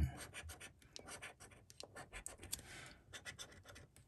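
A coin scraping the silver coating off a paper lottery scratchcard in many short, irregular strokes, faint.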